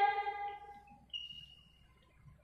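A held sung note fades out in the first half-second or so, followed by near silence broken by a faint, thin high-pitched squeak about a second in that lasts under a second.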